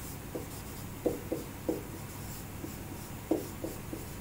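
Marker pen writing on a board: about eight short strokes and taps as an equation is written, the loudest a little after one second and again just past three seconds.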